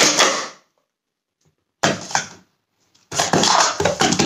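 Plastic sport-stacking cups clattering rapidly against each other and the mat as they are stacked up and down. The clatter cuts off suddenly about half a second in, with a short burst near the middle, and starts again about three seconds in.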